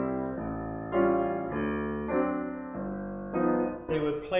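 Grand piano playing a stride-style left-hand pattern, low bass notes alternating with chords. About eight notes or chords are struck roughly every half second, each left to ring.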